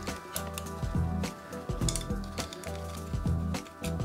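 Background music with sustained notes, over a scatter of small sharp metallic clicks and clinks as a screwdriver works the throttle cable free of a scooter carburettor slide against its spring.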